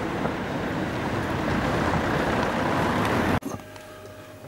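Street traffic noise with a car driving past close by, ending abruptly about three and a half seconds in. Quiet indoor room tone with a faint steady hum follows.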